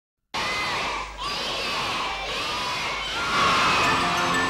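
A group of children shouting and cheering together. It starts abruptly a moment in, with many voices overlapping, and grows louder near the end.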